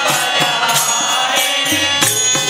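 Devotional bhajan: men's voices chanting together in held tones, over a hand-held frame drum beaten in a steady rhythm of about three strokes a second.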